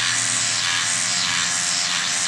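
Electric microneedling pen buzzing steadily as it is worked over the skin of the forehead.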